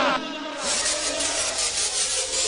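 Music with singing cuts off just after the start, followed by a steady rasping, hiss-like noise.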